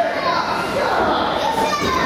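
Voices of a small live crowd shouting and calling out, with children's high voices prominent.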